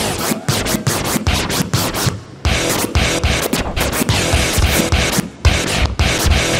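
DJ scratching and cutting a music track on Pioneer CDJ decks and mixer, in quick choppy strokes, with a short dropout about two seconds in before the chopped rhythm resumes.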